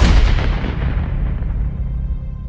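A heavy cinematic boom hit from trailer sound design. It rings out as a loud deep rumble, and its upper hiss dies away over the two seconds.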